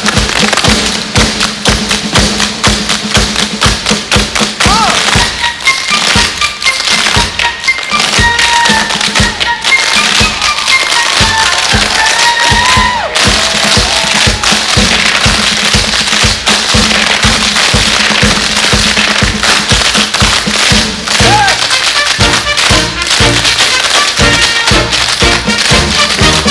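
A large group of tap dancers' shoes striking the stage in dense, fast, unison rhythms over music. Near the end, a fuller band comes in beneath the taps.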